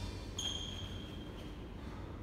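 A single high beep about half a second in, holding one pitch for about a second before fading out, over faint room noise.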